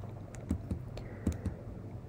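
Several faint clicks of computer keys, spread unevenly through about two seconds, over a low steady hum.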